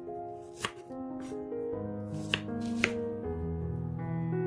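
Chef's knife slicing through a peeled onion and knocking against a wooden cutting board, about four sharp knocks in a loose rhythm, the loudest two close together near the three-quarter mark.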